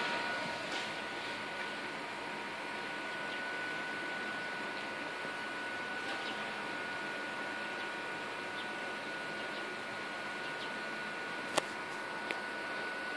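A bare, caseless desktop PC running, its CPU cooler and power-supply fans giving a steady whirring with a thin steady high whine over it. A single sharp click near the end.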